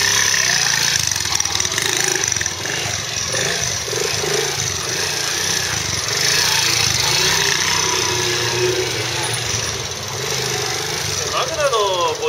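Honda Magna 50 with a Daytona bore-up cylinder, its small single-cylinder four-stroke engine running at low speed as the bike makes tight turns. It has a deep, thumping, torquey note, rising and falling a little with the throttle.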